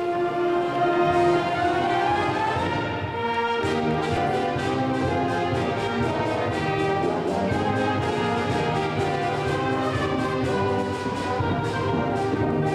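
Sixth-grade concert band of clarinets, brass and percussion playing, many of the players in their first year. It opens on long held notes, and about three and a half seconds in the full band comes in over a steady beat.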